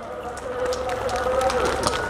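Live audience clapping mixed with crowd voices, growing louder through the pause between jokes.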